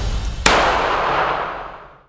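A single sharp crash about half a second in, ringing out and fading away over about a second and a half as the intro music ends.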